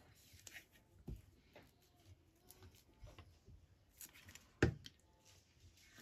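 Quiet handling of paper and a glue bottle on a cutting mat, with soft rustles and a few light knocks. The sharpest knock comes a little past the middle.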